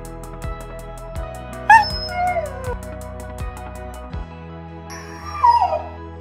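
Background music with a steady beat, with a dog's whining howl heard twice over it, about two seconds in and again near the end. Each cry is louder than the music and falls in pitch.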